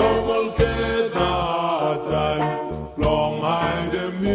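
A Vanuatu band's song in Bislama, with voices singing over bass and backing instruments.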